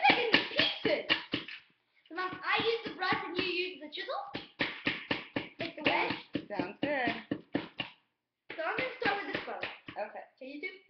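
Rapid taps of a small hand tool chipping at a plaster dig block in a metal baking tray, several strikes a second in runs with short breaks between them.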